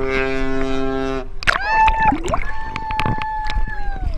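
A large ship's horn sounds one steady, low blast for about the first second. Then two long, high-pitched cries follow, a short one and a longer one, over sloshing water noise.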